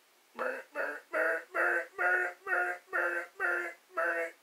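A man crying out in pain in a rapid run of short, high-pitched yelps, about eight in a row, starting about half a second in, as a hot soldering iron burns into his fingernail.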